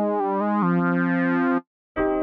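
Synthesizer lead patch from Reason's NN-XT sampler played on a keyboard: a quick run of notes steps upward, settles on one held note, then cuts off sharply about one and a half seconds in.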